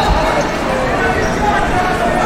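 Echoing hall ambience of a busy gym: indistinct voices from around the room, with a dull thud near the start.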